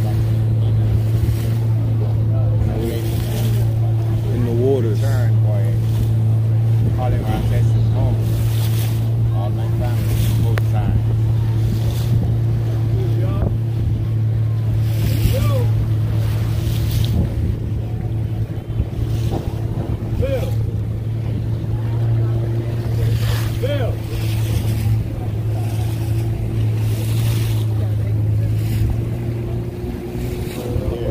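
A boat's outboard motor running steadily at speed, a constant low drone, with water splashing irregularly against the hull.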